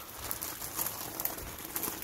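Bicycle tyres rolling over a gravel and dirt trail, a steady crunch with many small clicks and rattles.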